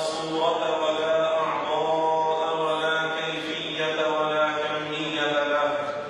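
A man's voice chanting in Arabic, a slow melodic recitation in several long phrases, each note held at a steady pitch. It stops shortly before the end.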